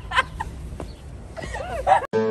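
Women laughing and giving short, high-pitched excited squeals: a few quick bursts at the start, a quieter stretch, then rising, arching cries near the end.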